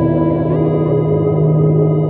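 Electric guitar sustained by an EBow, holding long steady notes layered in a sound-on-sound loop through a Strymon Volante tape and drum echo pedal. A new note glides in about half a second in.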